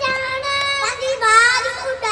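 Young boys' high voices chanting lines of a Punjabi poem in a sung, declamatory style, with long held notes and sweeping rises and falls in pitch.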